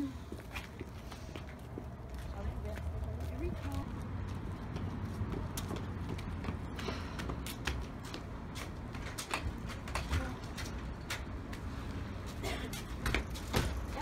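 Footsteps of several people walking on pavement, a scatter of short clicks and taps, over a steady low rumble, with faint voices now and then.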